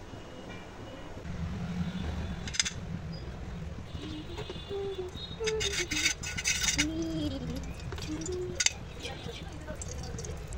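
Indistinct voices over a low steady rumble, with a short run of sharp clicks about halfway through.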